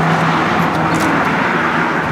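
Steady road traffic noise from a motor vehicle going by, with a low hum under it that fades out about half a second in.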